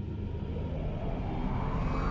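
Cinematic intro sound effect: a deep rumble that swells steadily louder, with a hiss above it rising and brightening as it builds.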